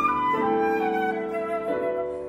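Flute playing a falling melodic line over sustained piano chords, with a new piano chord struck shortly after the start and another near the end.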